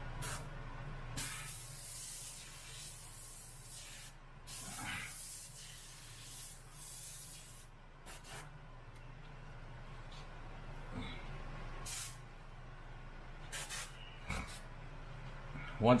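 Omni 3000 airbrush spraying paint onto a t-shirt in hissing bursts: two long sprays of a few seconds each, then several short puffs. A steady low hum runs underneath.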